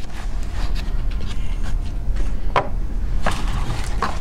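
A few light knocks and handling noises as cardboard shock-absorber boxes are moved about, over a steady low hum.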